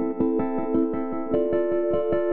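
Electric piano chords from an Arturia Analog Lab keys preset, each full chord triggered by a single key in the MIDI keyboard's chord mode. A new chord comes in about a second and a half in, over a quick, even pulse of about six a second.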